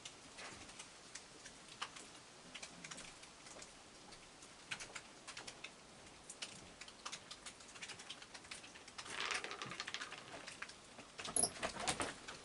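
Raccoon crunching dry kibble: faint, irregular small clicks, coming thicker about nine seconds in, with a few louder clicks near the end.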